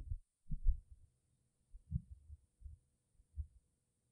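A few faint, irregular low thumps over a faint steady hum, in the background of an old, noise-reduced speech recording.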